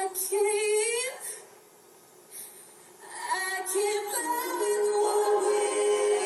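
A woman singing with backing music, recorded on a mobile phone. A short wavering phrase is followed by a pause of about two seconds, then a new line that settles into a long held note as the accompaniment fills out.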